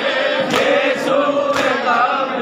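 A crowd of men chanting a Shia mourning noha together, with two sharp slaps about a second apart: hands beating on chests (matam) in time with the chant.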